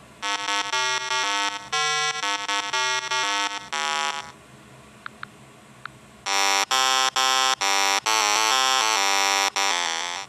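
A buzzy electronic tone stepping quickly through a string of notes like a simple tune, played in two phrases with a short pause between them.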